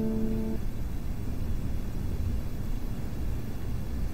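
A held chord of background music ends about half a second in, leaving a steady low rumble of background noise.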